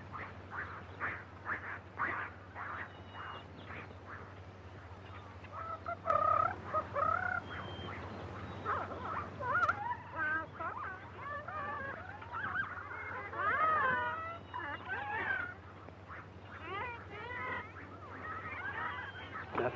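Jungle bird and animal calls: a quick string of short calls, about three a second, then from about six seconds in louder, overlapping warbling calls that rise and fall in pitch, over the steady low hum of an old film soundtrack.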